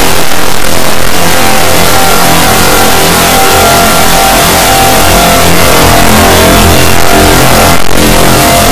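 A dense, heavily distorted wall of sound from many overlapping copies of the same music track playing at once, clipped at near full volume, with no break.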